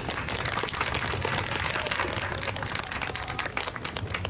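Crowd applause: many hands clapping in a steady, dense patter.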